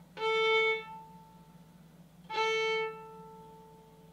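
Violin played as a slow-motion spiccato exercise: the bow is dropped onto the string and drawn briefly, alternating down-bow and up-bow. This gives two separate notes of about half a second each, on the same pitch and about two seconds apart.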